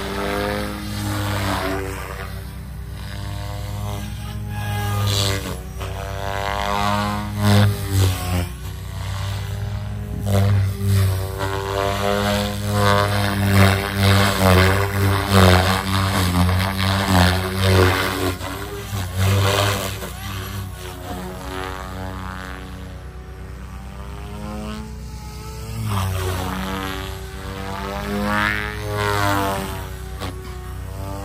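Electric RC helicopter (Raw 420, Xnova motor) in flight: rotor blades buzzing with a motor whine over them, the pitch sweeping up and down over and over as it flies aerobatics and passes near, loudest around the middle.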